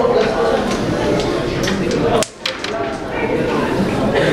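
Carrom break shot: the striker hits the packed centre coins with one sharp clack a little after halfway in, followed by a few quick clicks as the wooden coins scatter.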